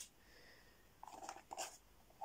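Faint scratching and rubbing of fingers on a small cardboard toy box as it is turned over in the hands, in a short cluster about a second in.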